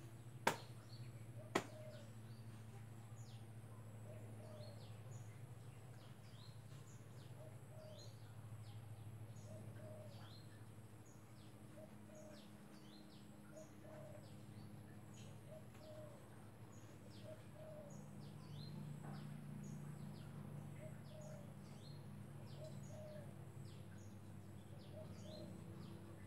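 Quiet outdoor background of birds chirping: many short, high chirps and a lower call repeating about once a second, over a steady low hum. Two sharp clicks sound near the start.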